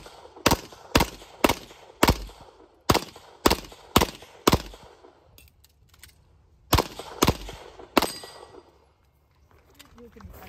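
Pistol shots fired in a course of fire: eight shots in quick succession about half a second apart, a pause of about two seconds, then three more shots, the last about eight seconds in.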